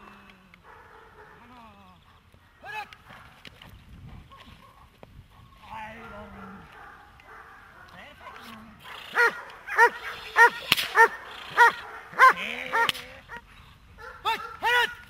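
German Shepherd barking during bite-sleeve work with a helper: a single sharp bark near the start, then a loud run of about seven barks, about two a second, in the second half.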